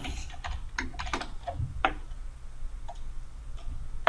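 Typing on a computer keyboard: a few separate, irregular keystroke clicks, most of them in the first two seconds.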